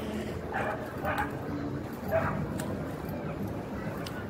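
A dog barking three short times over the murmur of passers-by talking.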